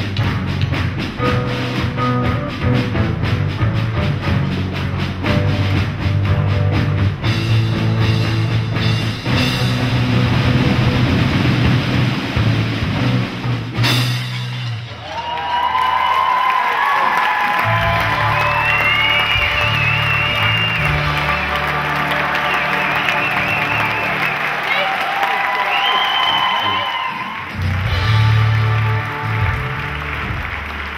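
A drum group playing fast on snare drums and a bass drum, ending with one sharp final hit about halfway through. After the hit, applause and cheering with music take over.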